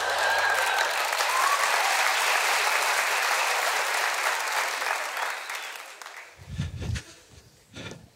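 Theatre audience applauding at the end of a song, fading away after about five or six seconds, while the accompaniment's last low note dies out in the first second and a half. A few low thumps follow near the end.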